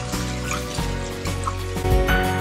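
Background music over the sizzle of butter with dried mint frying in a pan.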